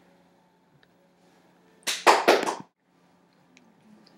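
A single short burst of hiss-like noise, under a second long, about two seconds in, over otherwise quiet room tone with a faint steady hum.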